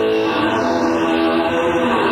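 Electric guitar holding long, overlapping sustained notes with a note change shortly after the start, heard through the hiss and room sound of a 1970s audience cassette recording.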